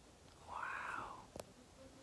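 A woman whispering one breathy word about half a second in, then a single short click.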